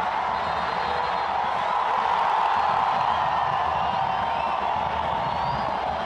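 Football stadium crowd noise: a dense, steady roar of many voices, with a few thin high whistles sounding over it.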